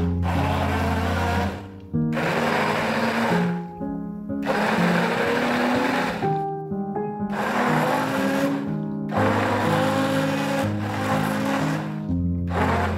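A small electric kitchen appliance motor run in five short bursts of about one and a half to two seconds each, with short pauses between them, over background music.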